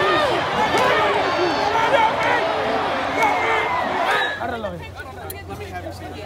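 Racetrack crowd shouting and cheering together, many excited voices overlapping, as the horses cross the finish. About four seconds in it drops to quieter chatter of a few voices.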